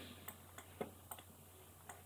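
Faint, sharp clicks of a computer mouse, about five in two seconds, the loudest a little under a second in.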